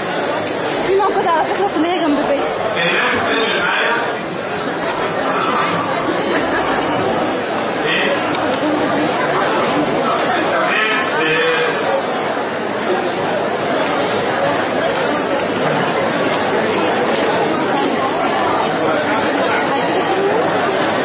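Many people talking at once: a steady, overlapping chatter of voices with no single voice standing out.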